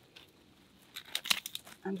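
A few short crackles and snaps about a second in, from gloved hands and pruning snips working at a shallow bamboo rhizome in gravel and dry underlay.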